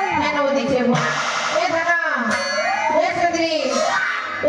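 A loud voice carried over the stage loudspeakers, with music playing along.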